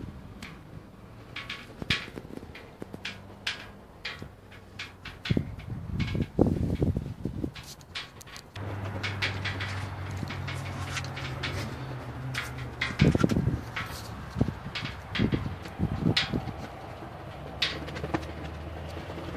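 Scattered clicks and knocks with a few dull thumps as someone moves about inside and around a large SUV, handling its seats, doors and tailgate. About halfway through a steady low hum sets in.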